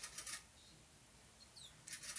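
Faint handling noise: two brief rustles as a hatchling ball python is turned over in the hand above a plastic tub, with a couple of faint, quick high chirps in between.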